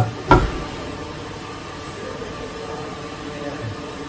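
Steady hum and hiss of machinery on a plastic injection-moulding factory floor, with two sharp knocks about a third of a second apart at the very start.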